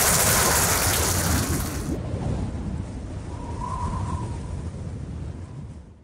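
Audience applauding, a dense crackling clatter of many hands. About two seconds in it cuts to a duller, quieter rumbling noise that fades out at the end.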